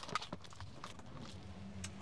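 Faint clicks and taps of clear sticky tape being handled and pressed onto a glass car roof, with a faint low hum in the second half.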